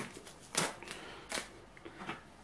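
Masking tape being peeled off a plywood board and handled: two short, quiet papery rustles, about half a second and a second and a half in.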